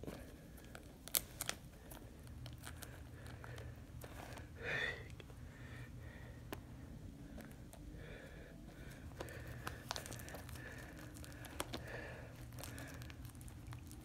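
Plastic shrink-wrap being torn and crinkled off a Blu-ray case: a run of faint, scattered crackles and clicks.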